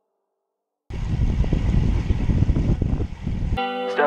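Wind buffeting the microphone of a camera riding along on a road bike, a loud, gusty low rumble that sets in abruptly about a second in. It cuts off suddenly near the end, where music starts.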